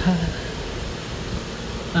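Standing electric fan running, a steady even rush of air.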